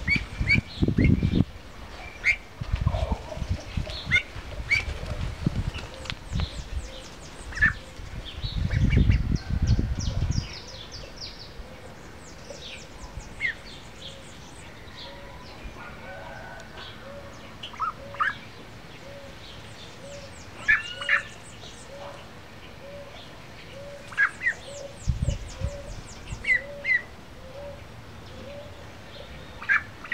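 Birds chirping and peeping in short scattered calls, some in quick high trills. A faint low call repeats a little over once a second through the second half. Low rumbling noise comes in spells during the first ten seconds and again near the end.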